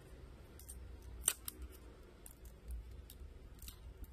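Thin steel pry blade clicking and scraping as it is worked along the seam between a Samsung Galaxy A20's back cover and frame. Irregular sharp clicks, the loudest a little over a second in.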